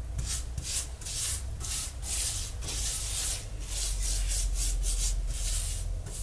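Silicone pastry brush scrubbing a gritty baking soda and dish soap paste across a glass induction cooktop, in quick, irregular strokes about two to three a second.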